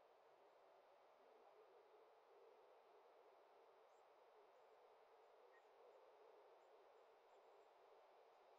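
Near silence: faint steady room hiss, with no sound from the video being shown.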